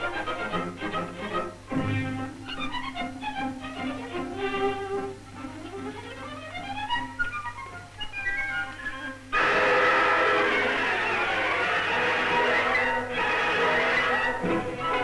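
Orchestral film score led by strings, playing a quieter passage with a rising run of notes, then breaking suddenly into a louder, fuller passage about two-thirds of the way through.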